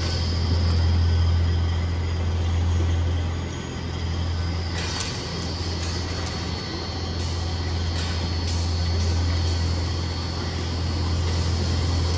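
Industrial rubber tyre-cord shredder running steadily under load, shredding rubber cord fabric, with a deep continuous hum. A few faint clicks sound over it.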